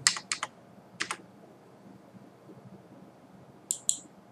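Computer keyboard keystrokes typing a number into a field: a quick run of key taps at the start, two more about a second in, then two clicks near the end.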